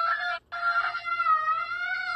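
A young girl's long, high-pitched wail: two held cries, cut by a short break about half a second in.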